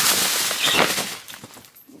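Tissue paper rustling and crinkling as it is stuffed into a paper gift bag, dying down about a second and a half in.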